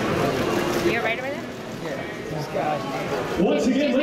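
Indistinct chatter of several people talking over one another, with one man's voice coming in louder near the end.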